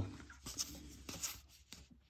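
Faint papery scrapes of trading cards sliding against one another as they are shuffled by hand, a few soft strokes in the first second or so.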